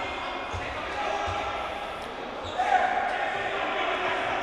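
A handball bouncing on a wooden sports-hall floor, a few low knocks in the first half, with players' distant calls in a large hall.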